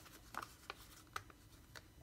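Faint handling of paper sticker sheets and stickers: four small ticks and rustles spread across two seconds, over a low room hum.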